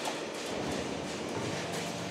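Steady mechanical running noise from a perforated cable tray roll forming line, an even rumble and hiss with no distinct strikes.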